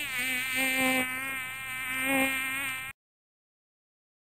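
Mosquito whine: a thin, high buzzing drone with many overtones, wavering slightly in pitch, that cuts off suddenly about three seconds in.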